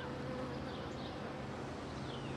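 Quiet outdoor background: a faint steady buzz with a few faint, high, short chirps.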